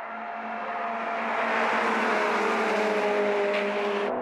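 Two Honda Civic Type-R sedans with K20A four-cylinder engines running hard on a race track. The engine note swells as they come nearer, holds, and sinks slightly in pitch near the end.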